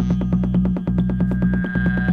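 Acid house/techno track: a fast, evenly repeating pulsing synth pattern over a steady low bass drone, with a few held high synth tones.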